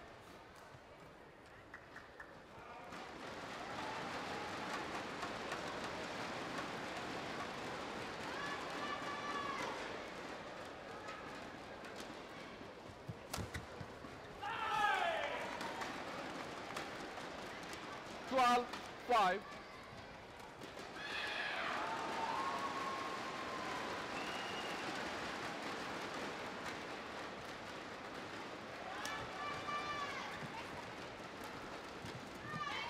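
Badminton rally with steady crowd noise in an indoor arena that swells about three seconds in, racket strikes on the shuttlecock and players' footsteps on the court. Several calls and shouts rise above it, two short loud ones a little past halfway.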